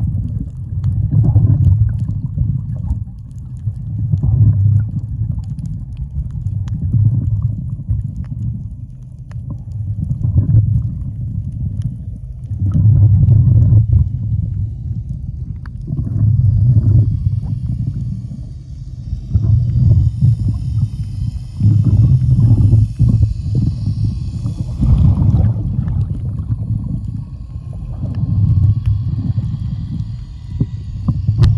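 Muffled underwater rumble of water moving against an underwater camera, swelling and fading about every three seconds, with a faint hiss for a few seconds past the middle.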